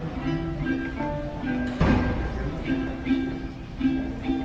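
Mariachi vihuela played by hand, its plucked notes ringing in short phrases, with one louder strum about two seconds in.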